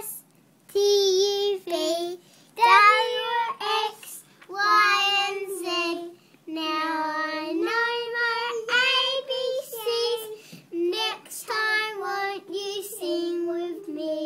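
Young children singing without accompaniment, a song sung in short phrases of held notes with brief pauses between them.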